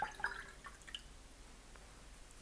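A watercolour brush being rinsed in a water jar: a few light clinks and drips in the first second.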